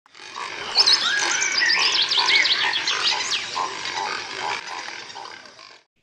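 Wild animal calls: many quick, high chirps and whistles over a series of lower, evenly repeated calls, fading in at the start and fading out near the end.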